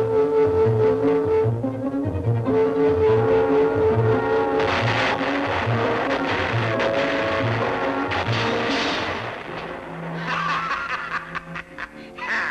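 Cartoon score and sound effects: a held, ringing hum standing for the magic tuning fork, over a pulsing low figure of about three notes a second. About four and a half seconds in, a dense crashing rumble breaks in as the sound waves shatter armour and weapons, dying down near the end.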